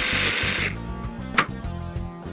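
Electric drill boring a hole through copper sheet, stopping about two-thirds of a second in, followed by a single sharp click about a second later.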